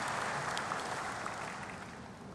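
Large audience applauding, the applause slowly fading away.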